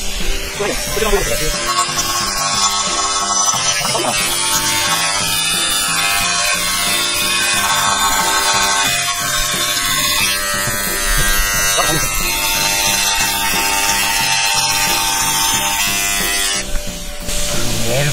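Background music with a small handheld electric rotary tool (die grinder) buzzing underneath as it runs against a painted motorcycle swingarm.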